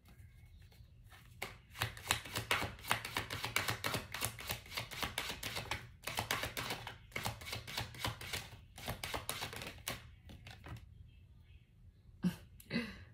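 A deck of tarot cards being shuffled by hand: two long runs of rapid papery card clicking, the first starting about a second in, a short pause in the middle, and the second stopping shortly before the end.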